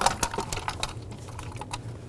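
Irregular clicks and light knocks of an engine's lower intake manifold being rocked loose and lifted off the block, most of them in the first second with a few more near the end.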